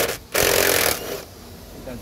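An electric drill-driver whirring in one short burst from about a third of a second in to about one second, driving out a screw from a car door's door-check mounting bracket.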